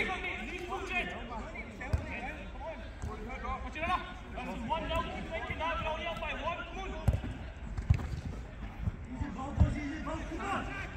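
Players' voices calling across the pitch, with several dull thuds of a football being kicked.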